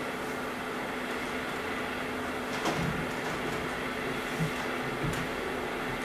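Steady hiss with a low, even hum, broken by a couple of faint clicks.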